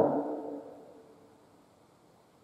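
The end of a man's sing-song recitation through a microphone: his voice stops at once and an echo dies away over about a second, then near silence.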